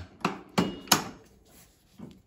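Three sharp metallic clicks in the first second, one with a brief high ring, as a steel bolt knocks against the steel bracket and will not go through. Welding has pulled the bracket about a 16th or 32nd of an inch out of line, so the holes no longer align.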